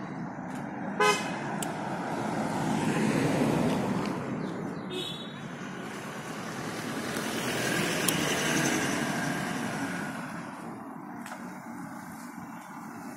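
Traffic noise on a road with a short vehicle horn toot about a second in, the loudest sound, and a fainter toot about five seconds in; the road noise swells twice as vehicles pass.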